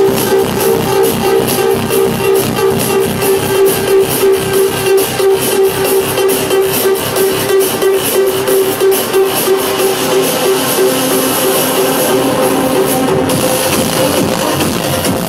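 Electronic dance music from a live DJ set, played loud over a nightclub sound system, with a steady kick-drum beat and a pulsing synth note. Near the end the top end drops out for a moment and the synth line moves lower.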